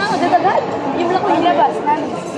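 Several people talking at once: overlapping conversational chatter of voices, with no other distinct sound.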